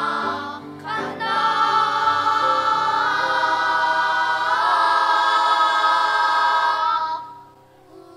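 Children's choir singing in harmony, growing louder about a second in into a long chord that is held and then released about seven seconds in.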